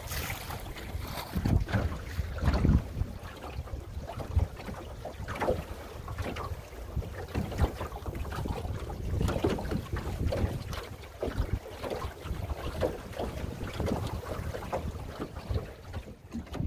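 A small open sailboat, a Drascombe Lugger, under sail with water sloshing and splashing irregularly along its hull, while gusts of wind rumble on the microphone.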